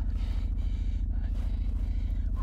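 Car engine running, a steady low rumble with a fast even pulse, heard from inside the cabin.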